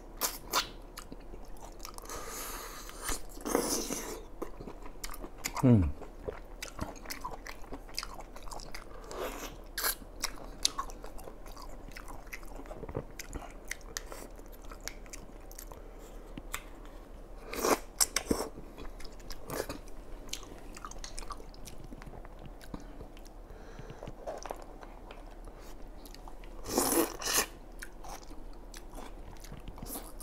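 Close-up eating sounds of a person biting and chewing abalone in a spicy sauce, with many wet mouth clicks and a few louder wet smacks. About six seconds in comes a short, low hum that falls in pitch.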